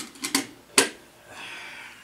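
Negative carrier of an Opemus 5A enlarger being handled: four sharp clicks and knocks within the first second, the last the loudest, then a soft scraping rustle.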